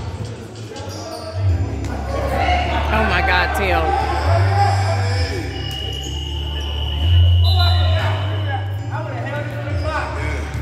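Indoor basketball game: the ball bouncing on the court and players' voices, over music with a deep bass line that changes note every second or so.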